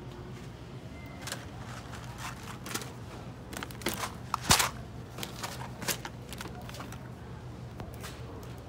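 Groceries, glass jars among them, being handled and set down in a wire shopping cart: scattered knocks and clinks, the loudest about four and a half seconds in, over a steady low hum.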